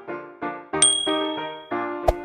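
Short repeated keyboard chords of intro music, with a bright bell-like 'ding' sound effect about a second in that rings on briefly and is the loudest sound.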